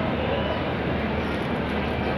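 Metre-gauge passenger coaches rolling past on the adjacent track: the steady running noise of steel wheels on rail as the departing train gathers way.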